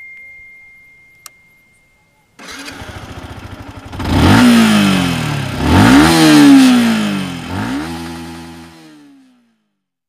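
Yamaha R15S single-cylinder engine starting and idling briefly, then revved in neutral: two big blips and a smaller third one, each climbing in pitch and falling back, before the engine sound dies away near the end.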